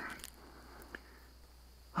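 Near quiet: a faint steady low hum, with one small click about a second in.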